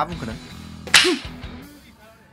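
A single sudden, sharp crack about a second in, a film hit sound effect that dies away quickly, over low background music.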